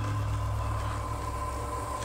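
A steady low hum or drone with no distinct events.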